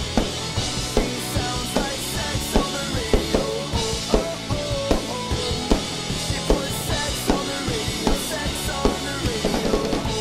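Mapex Pro M rock drum kit with Zildjian crash cymbals played hard in a steady pop-punk beat, kick and snare hits coming several times a second under washing cymbals. The song's recorded music plays underneath.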